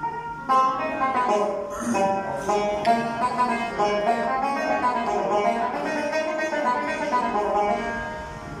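Small acoustic string ensemble playing: banjo, acoustic guitar and oud plucking together, with a violin, in a continuous run of bright plucked notes. The lower instruments drop out briefly at the start, and the ensemble comes back in together sharply about half a second in.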